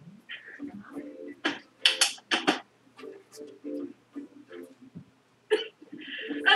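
Faint voices with a few short, sharp breath-like vocal sounds about one and a half to two and a half seconds in.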